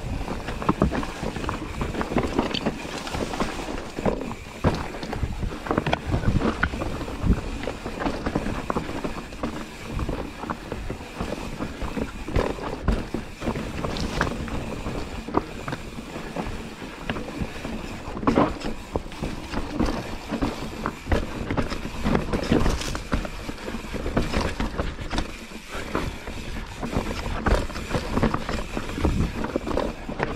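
Mountain bike riding down a rocky, technical trail: tyres rolling and knocking over stones and roots, with the bike rattling and clunking irregularly throughout, and some wind noise on the microphone.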